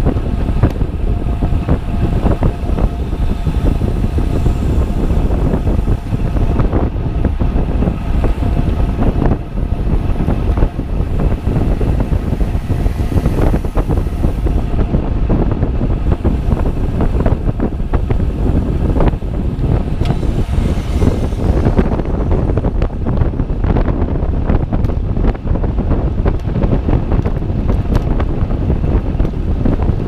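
Wind rushing over a bike-mounted action camera's microphone while riding a road bike at about 45 km/h: a loud, steady low rush with frequent brief crackles.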